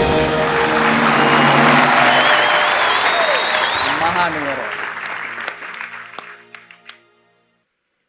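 Studio audience applauding and cheering over the game show's music sting, greeting a correct answer. The applause and music die away about seven seconds in.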